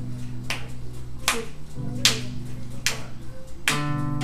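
Sharp clicks keeping even time, about one every 0.8 seconds, over a low held note; near the end an acoustic guitar comes in with a ringing chord.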